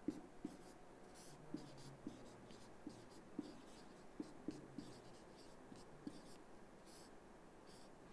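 Marker pen writing on a whiteboard: faint scratching strokes with small irregular taps as letters are formed.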